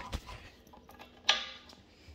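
A single sharp knock with a brief ring about a second in, amid quiet handling noise.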